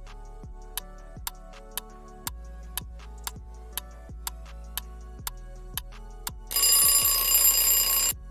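Quiz countdown-timer sound effect: clock ticks about two a second over soft background music, then an alarm-clock bell ringing loudly for about a second and a half near the end, signalling that time is up.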